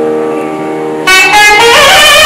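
Nadaswaram, a South Indian double-reed temple oboe, holding a steady reedy note. About a second in it breaks into a louder, brighter phrase with bending pitch.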